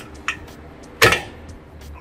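Cable-station pulley carriage being adjusted on its steel upright: a faint click, then a single sharp clack about a second in as it is moved to a new height.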